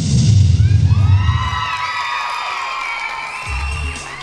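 Dance music with a heavy bass beat ends about a second and a half in, and the audience cheers with high whoops and shouts.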